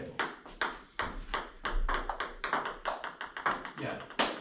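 Table tennis balls being hit and bouncing: a quick, irregular string of light clicks of balls on paddles and table, several a second.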